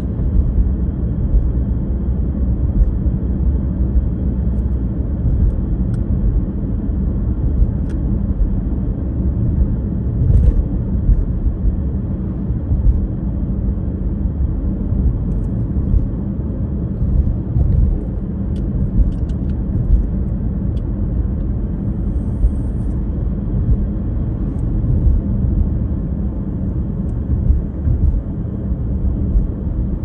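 Car cruising at steady speed, heard from inside the cabin: an even, low rumble of tyre and engine noise.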